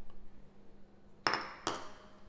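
Two sharp clinks of kitchen bowls, a little past a second in and half a second apart, each with a short ring: the emptied ceramic bowl knocking against the stainless steel mixing bowl and being set down on the counter.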